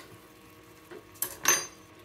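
Two short clinks of a metal teaspoon against glass spice jars as the spices are handled, about a second apart, after a quiet start.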